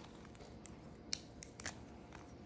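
A few faint, sharp clicks of a marker pen being picked up and uncapped, the loudest just after a second in.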